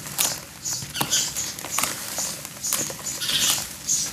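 Hands squeezing and crumbling a lump of wet charcoal in foamy water: quick, repeated squelches and splashes, about two or three a second, with a few sharp clicks.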